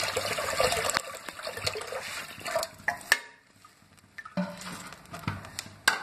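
Water poured from a jug into a kadhai of soaked moong dal, running for about three seconds and tapering off. Then a short quiet, with a sharp knock near the end.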